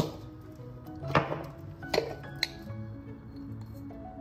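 Background music, over a few sharp clinks from glass spice shakers being handled and shaken over a glass mixing bowl.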